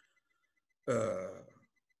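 A man's drawn-out hesitation sound, a single voiced "uhh" that starts about a second in and fades out within under a second, with silence on either side.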